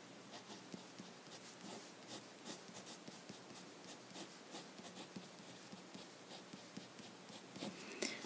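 Felt-tip pen writing on paper: a faint run of short pen strokes.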